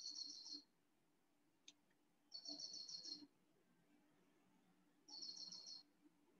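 Faint bird calls: three short trills of rapid, high chirps, about two and a half seconds apart.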